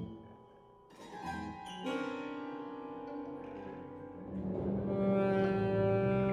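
Live chamber ensemble of alto saxophone, violin, electric guitar, electric bass and piano playing long held notes. After a brief quiet moment near the start, the sustained notes come in and the sound swells louder in the last second or so.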